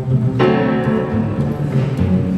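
Live jazz from a duo of grand piano and plucked upright double bass, with a piano chord struck about half a second in over the walking bass notes.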